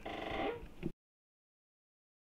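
A short, faint pitched call, cut off abruptly about a second in, then dead silence.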